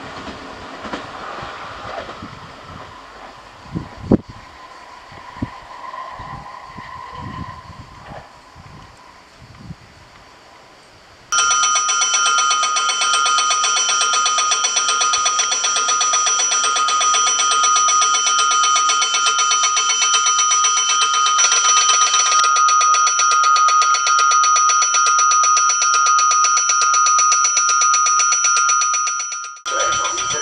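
A passing electric train's rumble and clicks fading away. Then, about eleven seconds in, an electric warning bell starts suddenly: a loud, continuous, rapidly trilling ring that stops abruptly just before the end.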